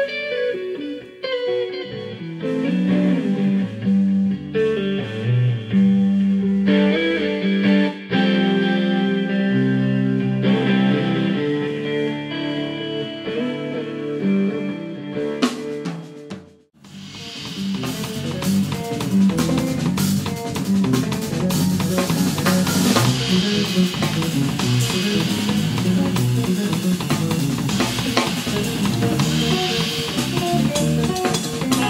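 A live band plays: electric guitar and bass lines over light drums. About two-thirds of the way through, the sound breaks off suddenly for a moment, then the full band comes back busier, with drum kit and cymbals.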